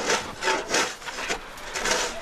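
Snow shovels scraping and scooping through deep, packed snow: a quick run of about five rough scrapes.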